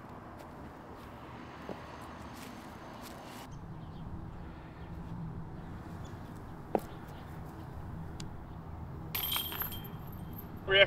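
Low wind rumble on the microphone, with one sharp click about seven seconds in.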